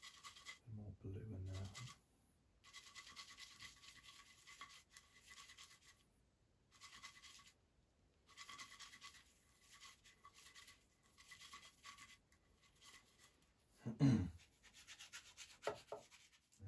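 Paintbrush scrubbing and mixing acrylic paint on a palette: a faint bristly rubbing in repeated stretches with short pauses between them. A throat clearing near the end.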